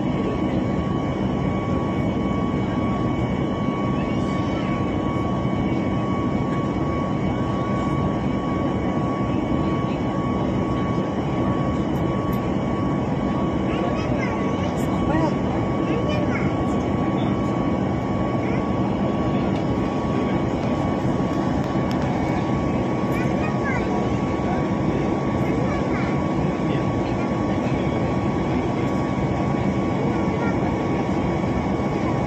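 Steady cabin noise of an airliner in its climb: a constant rumble of engines and airflow with a steady high whine over it.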